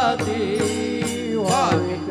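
Devotional kirtan music: a man's voice sings held, ornamented notes over a steady drone, with percussion strikes keeping the beat. A held note ends just after the start, and a short gliding vocal phrase comes about one and a half seconds in.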